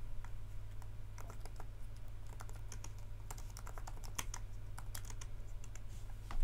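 An irregular run of light clicks and taps, thickest in the middle, over a steady low electrical hum.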